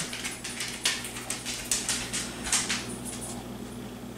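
A stiff sheet of dried dyed paper rustling and crackling in irregular little clicks as it is held and tilted by hand, over a steady low hum.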